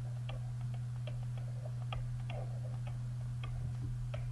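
Steady low electrical hum, with faint, irregular clicks of a stylus tapping on a drawing tablet while a formula is handwritten.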